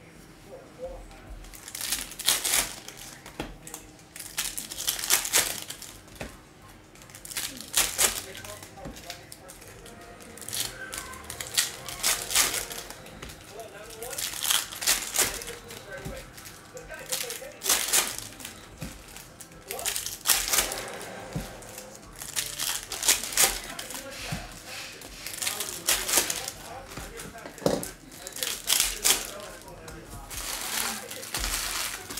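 Stack of Donruss Optic basketball cards being handled and sorted by hand: card edges flicking and sliding against each other in repeated short rustling bursts every second or two as cards are thumbed through and dealt onto piles.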